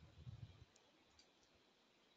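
Near silence with a few faint clicks and a soft low rumble in the first half second.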